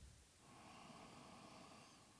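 Near silence, with one faint, long deep breath drawn in, starting about half a second in.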